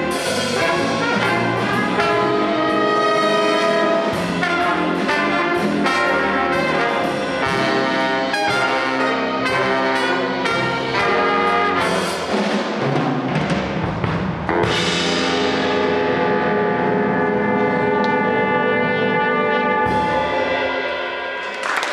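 A jazz big band plays a shuffle live, with trumpets, trombones and saxophones over a drum kit. About two-thirds of the way through, the band moves from busy ensemble figures to a long held chord.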